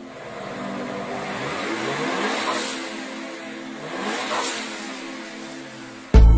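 Smart Fortwo car engine revving up twice, with pitch rises peaking about two seconds apart.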